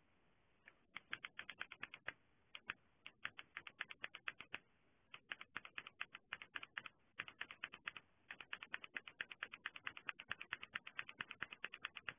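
Typing on a computer keyboard: quick bursts of key clicks with short pauses between them, starting about a second in.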